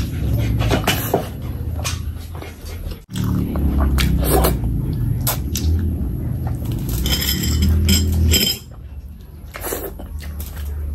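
Close-miked wet chewing and lip-smacking of a mouthful of curry and rice, with many short sharp smacks and clicks. It breaks off for an instant about three seconds in and goes quieter for a moment near the end.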